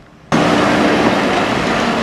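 Steady road traffic noise from container trucks driving past, starting suddenly about a third of a second in.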